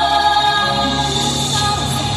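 A woman singing long held notes into a microphone over amplified backing music.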